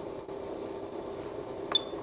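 Datascope Spectrum OR patient monitor running with its cooling fan humming steadily. Near the end there is one short, high click-chirp from its keys as a menu button is pressed.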